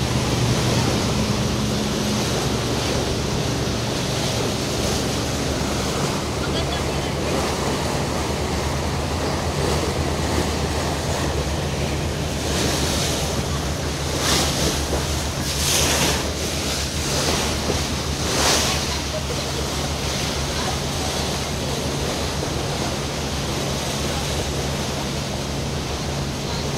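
Boat under way: a steady low engine hum under the rushing water of the wake along the hull and wind on the microphone, with several louder rushes of water and wind noise a little past the middle.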